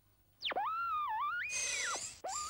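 Cartoon metal-detector sound effect, heard while the detector is swept over the ground: a warbling electronic tone that swoops down and back up, wavers and dips, then rises to a higher held note with a hiss before cutting off.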